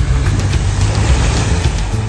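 Mitsubishi Triton ute driving through a muddy puddle: its engine running under a loud hiss of water and mud spraying from the tyres, the spray swelling about halfway through.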